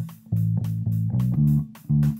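Solo bass guitar playing a free-form bass line in A: a run of plucked low notes with two brief pauses, one just after the start and one near the end.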